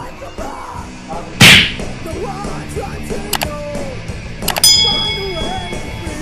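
Subscribe-button animation sound effects over background rock music. A whoosh about a second and a half in is the loudest sound, followed by a mouse click and then more clicks with a bell ding that rings on near the end.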